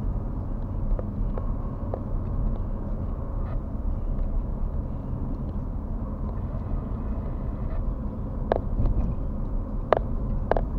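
A car driving along a road, heard from inside the cabin: a steady low rumble of engine and tyres, with a few short knocks near the end.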